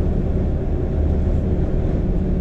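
Steady low rumble of a car driving at motorway speed, heard from inside the cabin: tyre, road and engine noise.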